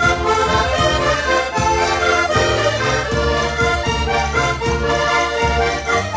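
Three button accordions, two diatonic and one chromatic, playing a lively traditional Portuguese dance tune together: sustained reedy chords and melody over low bass notes that change every half second or so.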